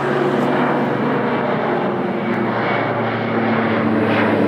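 Airplane flying overhead, its engines a loud, steady noise with a few steady tones in it.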